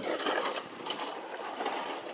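Steady rushing noise of riding an electric bike along a dusty dirt road: tyres on loose gravel and wind, with no engine note.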